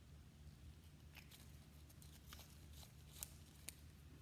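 Near silence: room tone with a steady low hum and a scattering of faint small clicks, the strongest two about three seconds in.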